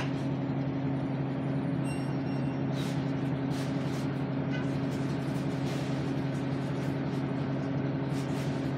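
Large vehicle's engine idling, heard from inside the cab as a steady low hum, with a few faint clicks and rattles over it.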